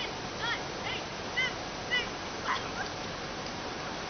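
Short, high yipping calls, about two a second, that stop after two to three seconds, over the steady rush of floodwater.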